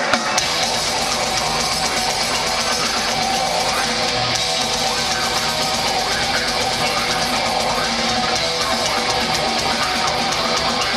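Live blackened thrash metal band playing at full volume: distorted electric guitars, bass and rapid drumming, recorded from the audience. The band comes in hard at the very start and keeps a dense, unbroken wall of sound.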